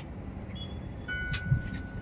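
Low steady background rumble, with a faint thin high-pitched tone that comes in about halfway through and holds steady.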